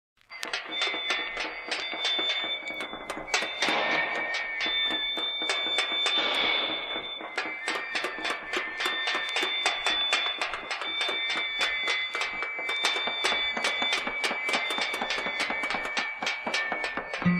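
A rapid metallic clatter of bin lids being banged, about four or five strikes a second, with shrill whistles blown and held over it: the street's warning signal of an army raid, used as the song's opening sound effect.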